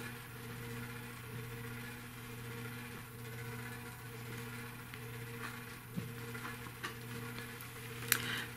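Steady low electrical hum of a quiet room, with a couple of faint clicks about six and seven seconds in.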